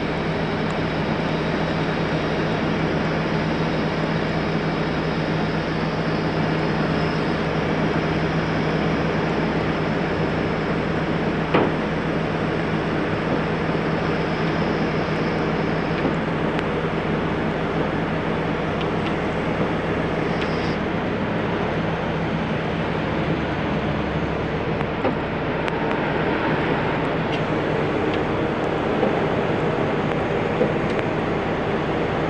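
Heavy wrecker's diesel engine running steadily under a constant hiss, with its low hum fading out near the end. One sharp click sounds about 11 seconds in.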